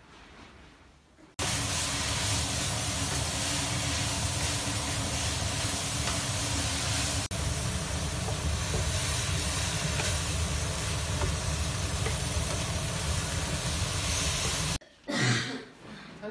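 Cabbage and meat sizzling in a wok as they are stir-fried with a wooden spatula: a loud, steady hiss over a low steady hum. It starts abruptly about a second and a half in, dips briefly midway, and stops abruptly near the end.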